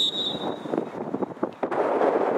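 A referee's whistle gives one short, shrill blast at the start. A few sharp knocks follow, and a loud burst of noise rises near the end.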